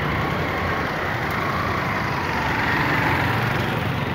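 Street traffic: motor vehicle engines running steadily, a continuous low hum with road noise.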